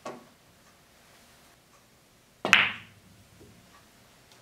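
A light knock as the rolling object ball arrives at the near cushion, then about two and a half seconds in a sharp, much louder click-clack of a pool shot: the cue tip striking the cue ball and the balls colliding, with a brief ring.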